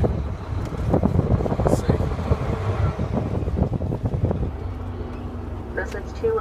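Semi-truck cab at low speed: the diesel engine running underneath, with rattling and clatter through the cab, and a steady hum that comes in about four and a half seconds in.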